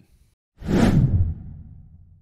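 Logo-intro whoosh sound effect: about half a second in, a loud swoosh sweeps down in pitch into a low rumble that fades away.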